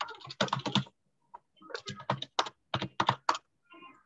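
Typing on a computer keyboard: irregular runs of quick keystrokes with a short pause about a second in.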